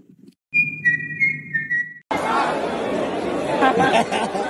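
A few high whistled notes, a steady tone stepping down to a slightly lower one over about a second and a half. About two seconds in they cut off abruptly into loud crowd chatter with laughter.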